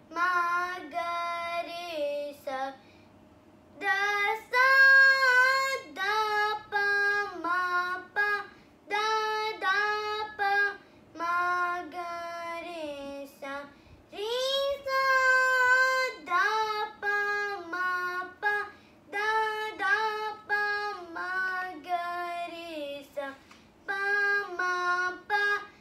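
A young girl singing solo, in phrases of held and gliding notes, with a short pause for breath about three seconds in.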